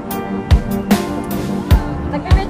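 Background music with sustained tones and drum beats.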